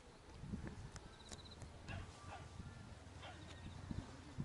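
Faint outdoor ambience under a steady low rumble, with a few short animal calls that fall in pitch around the middle and a faint high pulsing trill that recurs every couple of seconds.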